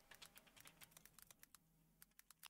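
Faint computer keyboard typing: a quick run of key clicks as a search term is typed, thinning out near the end.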